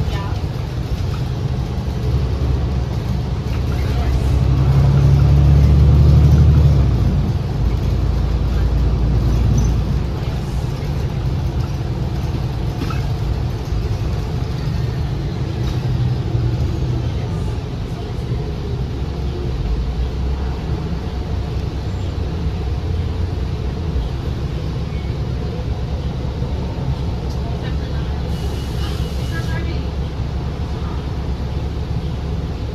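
Cabin noise inside a moving 2019 New Flyer XD60 articulated diesel bus: a steady low drone from the engine and drivetrain mixed with road and tyre noise, swelling louder for a couple of seconds about five seconds in.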